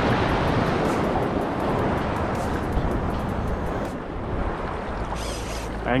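Sea surf washing steadily.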